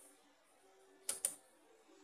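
Two quick clicks about a second in, a button pressed and released to send a pulse to the PLC's S2 input.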